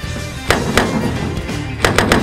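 Three sharp single-action revolver shots over intro music: two close together about half a second in, then another near the end.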